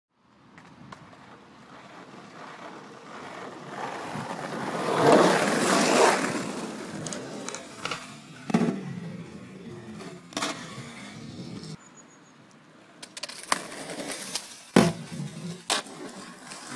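Skateboard wheels rolling on rough asphalt, swelling as the board comes close. Then come sharp wooden clacks of the tail popping and the board landing, several in the second half, the loudest near the end.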